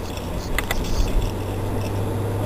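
Car cabin noise while driving: a steady low drone of engine and tyres on the road, with a couple of sharp clicks about half a second in and a few low thumps around a second in.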